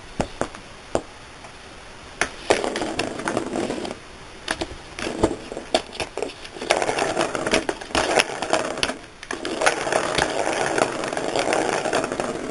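Cat scratching and pawing at a corrugated cardboard scratch pad set in a plastic ball-track toy. A few light clicks come first, then four raspy bursts of one to two seconds each.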